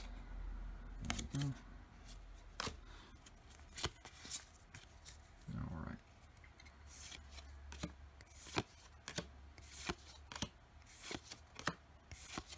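A small stack of Pokémon trading cards is flipped through by hand, each card slid from the front of the stack to the back. This gives a run of soft, irregular clicks and sliding sounds of card stock.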